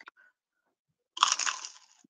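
A crunchy bite into a fried turon (banana spring roll), its crisp wrapper crackling for about half a second, a little past halfway through.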